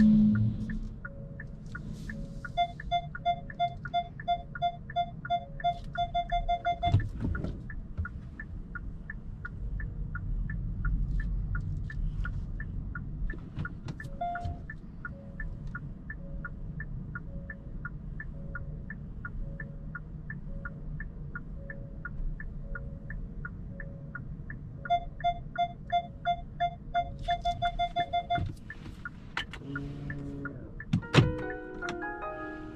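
Hyundai Kona Hybrid's parking sensor beeping rapidly in two bursts while the car reverses into a space. A steady fast ticking and a low cabin hum run underneath.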